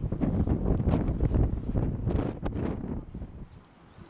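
Wind buffeting the microphone: a heavy low rumble that eases off about three seconds in, with a few brief rustles around two seconds in.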